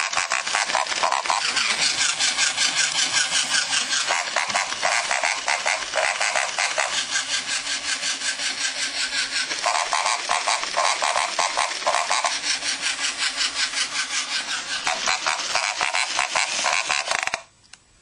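Battery-powered walking plush toy pig running: its motor and gears make a fast steady rattle while it oinks over and over, quite loud. It cuts off suddenly near the end.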